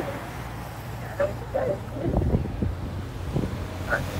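Lead escort motorcycles approaching slowly, a low steady engine rumble that builds from about halfway through, with faint voices of onlookers and wind on the microphone.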